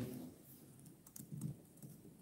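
Faint scattered taps and clicks of a smartphone being handled and tapped, with a brief soft low sound about one and a half seconds in.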